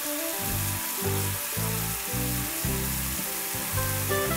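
Steady sizzling hiss of frying, under background music with plucked guitar and bass notes.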